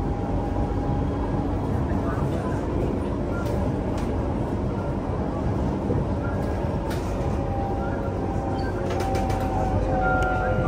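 Cabin noise of a C151A MRT train running along the track: a steady rumble of wheels on rail, with faint whining tones coming in near the end.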